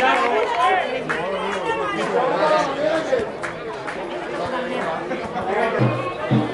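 Several people talking and calling over one another, spectators' and players' voices at an amateur football match. Music with a steady beat starts right at the end.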